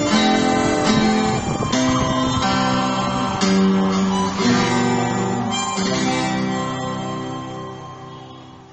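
12-string acoustic guitar strumming the closing chords of a song, about one chord a second. The final chord comes about six seconds in and rings out, fading away.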